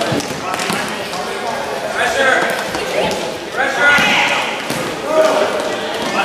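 Voices shouting across a gym hall during an indoor soccer game, with a few sharp thuds of the ball being kicked and bouncing on the hard court.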